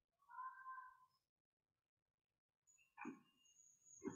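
Near silence, broken by one faint, short animal-like call about two-thirds of a second long, shortly after the start, and a brief faint sound about three seconds in.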